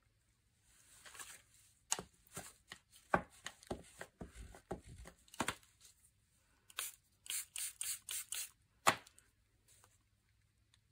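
Faint taps and clicks of a clear acrylic stamping block touching down on paper tags and cards on a paper-covered table as ink is dripped and dabbed on. Near the end come a quick run of about six short hissy sounds and one sharper click.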